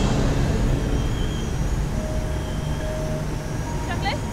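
Tiger Moth biplane's engine running steadily in flight, a low even drone with wind rushing past the open cockpit.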